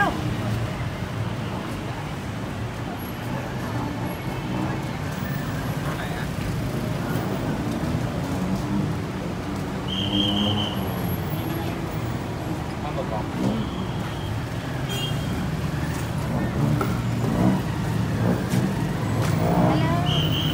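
Street traffic: a steady low rumble of engines, with a few short high-pitched beeps.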